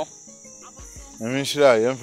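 Crickets trilling steadily at a high pitch in the night background, heard clearly in a lull; a voice starts talking a little over a second in.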